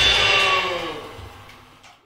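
A live rock band's last chord and cymbals ringing out, fading away over about a second and a half as the song ends.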